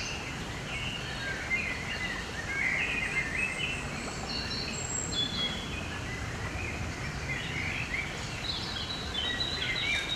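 Several songbirds singing and calling, with short chirps and warbled phrases throughout, over steady outdoor background noise.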